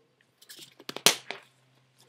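Handling noise of plastic paintball gear: a few light clicks, then one sharper, louder clack about a second in.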